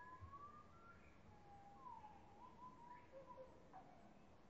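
Near silence with a few faint, thin whistled bird notes gliding up and down, each under a second long.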